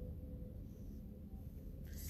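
Quiet room tone with a faint steady hum and no distinct event.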